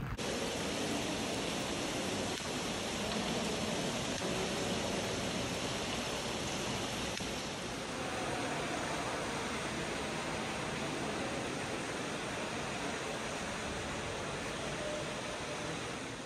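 A steady rushing noise with no distinct events, like running water or wind, starting abruptly and changing slightly about halfway through.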